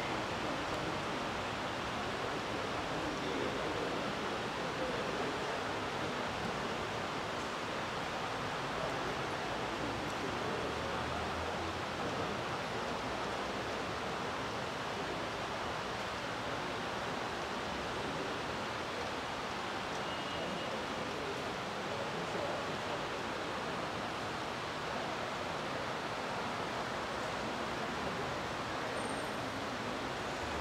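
Steady, even background noise with nothing standing out: room tone in a large hall.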